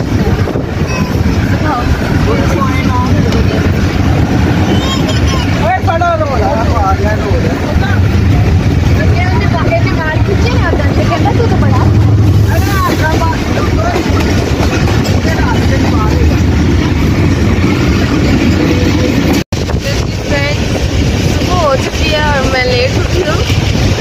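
Passenger train carriage heard through an open window: a loud, steady rumble of the train running, with passengers' voices over it at times.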